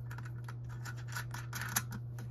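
Light metallic clicks and scrapes of a stainless steel nut and washers being threaded by hand onto a 10 mm bolt on a solar panel mounting bracket, with one sharper click near the end. A steady low hum lies underneath.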